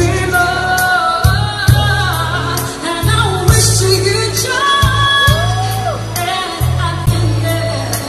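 A young woman singing into a karaoke microphone over the machine's backing track, which has a deep bass line and a steady drum beat about twice a second.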